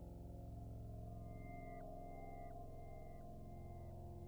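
Quiet electronic accompaniment: a sustained low synthesizer drone, joined about a second in by a high tone that repeats roughly every three-quarters of a second, each note dropping in pitch as it ends.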